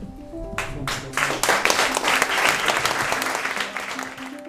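Audience applauding: clapping starts about half a second in and swells to full strength a moment later. Background music plays under it.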